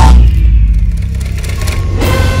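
Logo-intro sound effect: a sudden loud hit with a deep low boom, followed by crackling, splintering noises, and a second hit near the end as sustained tones come in.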